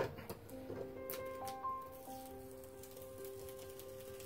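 Soft background music of long held notes, with faint crackling of masking tape being peeled off watercolour paper in about the first second.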